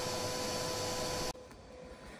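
Kärcher vacuum cleaner running with a steady whine, its nozzle set at the wasps' entry into the woodpile to suck them in. It cuts off abruptly just over a second in, leaving faint outdoor background.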